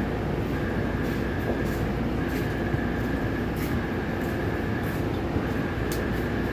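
A Taipei Metro C301 train stands at the platform with its doors open, its onboard equipment giving a steady low hum. A faint high tone comes and goes every second or so.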